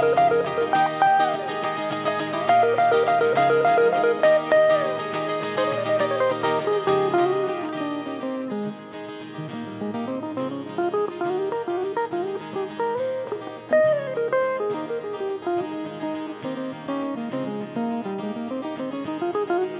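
Solo jazz played on an archtop electric guitar: fingerpicked chords under running single-note lines that climb and fall, a little softer from about halfway through.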